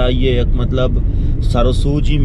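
A man talking inside a moving car, over the car's steady low road and engine rumble heard in the cabin.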